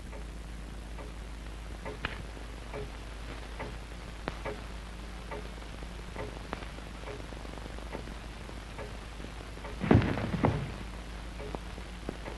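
Faint, regular ticking, about one to two ticks a second. About ten seconds in comes a gunshot: a sudden, loud cluster of sharp reports lasting about half a second.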